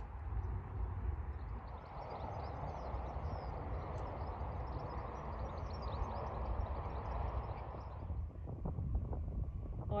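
Outdoor ambience with wind rumbling on a phone microphone and faint, short high chirping throughout. A rustling hiss rises from about two seconds in and fades near the end.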